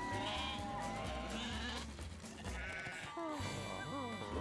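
Cartoon sheep bleating several times in short calls over background music.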